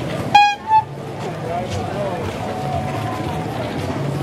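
A vehicle horn gives two short toots a third of a second in, the first louder and longer, over steady background chatter of a busy street market.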